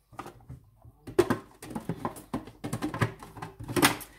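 Irregular plastic clicks and knocks from handling a Goldair food processor, as the feed-tube pusher is fitted into the lid, loudest about a second in and just before the end. The motor is not running.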